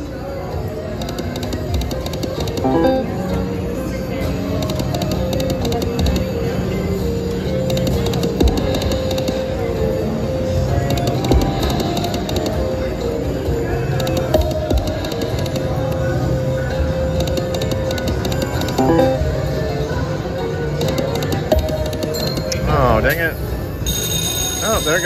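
Video slot machine's game music and reel-spin tones playing steadily during live spins, over casino chatter. Just before the end comes a warbling, swooping sound effect as a column of coin symbols lands.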